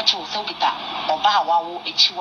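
Speech only: a woman talking in Pidgin English in a continuous run of words.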